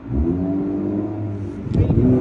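A motor vehicle's engine running, its pitch climbing briefly as it starts and then holding steady, with a short knock near the end.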